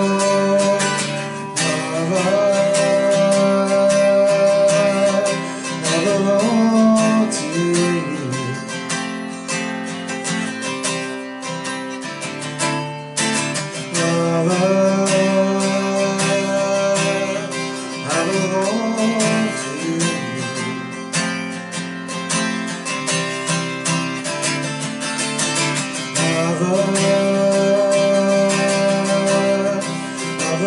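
Acoustic guitar strummed steadily, with a man's voice holding long sung notes over it in phrases that recur about every twelve seconds.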